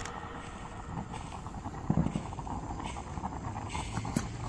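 Outdoor woodland ambience with a few scattered short knocks, the loudest about two seconds in.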